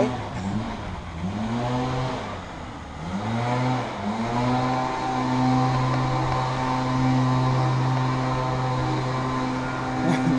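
Quadcopter drone's propellers humming. The pitch swoops up and down several times in the first few seconds, then holds steady as it hovers.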